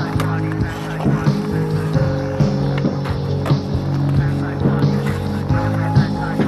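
Background music with a beat and sustained bass notes.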